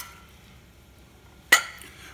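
Faint scraping of rice being scooped, then about one and a half seconds in a single sharp clink of a metal serving spatula against a china bowl as jambalaya is served, with a brief ring.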